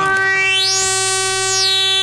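A sustained synthesizer chord held steady, its upper tones brightening and then fading back over the middle of the chord.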